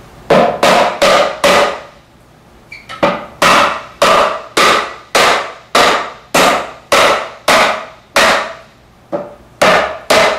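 White rubber mallet tapping a wooden drawer box's dovetail joint together: four quick strikes, a pause of over a second, then a steady run of about a dozen more, each a sharp knock with a short ring, seating the drawer back into the sides' dovetails.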